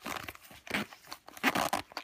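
Zipper on a small nylon first-aid pouch being pulled open in several rasping strokes, with the fabric rustling, loudest about a second and a half in.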